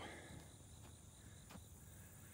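Near silence: faint outdoor background with a steady high-pitched insect drone, and one faint tick about one and a half seconds in.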